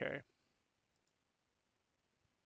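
A man finishes saying "OK", then near silence broken by a couple of faint computer-mouse clicks about a second in.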